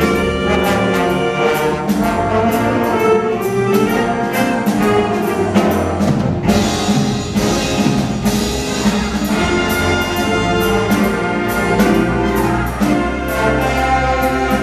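Jazz big band playing a straight-ahead F blues, with saxophones, trumpets and trombones together over drums and a steady cymbal pulse. A brighter cymbal wash comes in about halfway through.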